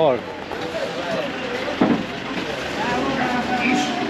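Other people's voices talking in the background over a steady low rumble, with one sharp knock about two seconds in.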